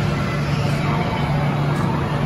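Steady din of an indoor arcade and bowling centre, with a constant low hum under it.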